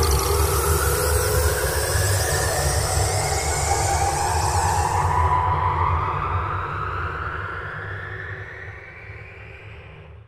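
Cinematic logo-intro sound effect: a deep pulsing rumble under slowly rising whooshing tones, fading away over the last few seconds.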